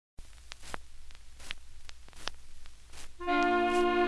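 Surface noise of a 78 rpm record: a low crackling hiss with scattered sharp clicks as the needle runs in. About three seconds in, the orchestra's opening enters on a held chord.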